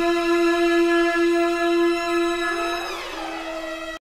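A single held musical note, steady in pitch, with a short sliding of its pitch about two and a half seconds in. It then carries on more quietly and cuts off suddenly.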